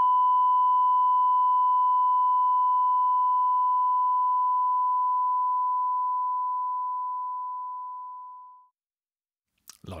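A 1 kHz sine test tone with a linear fade, running through an Elysia mpressor compressor at a 2:1 ratio: one steady pure tone that slowly gets quieter, then dies away quickly and stops about nine seconds in. A faint higher overtone fades out before it.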